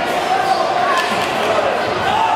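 Overlapping shouting voices in a large, echoing hall around a kickboxing ring, with a sharp knock about a second in.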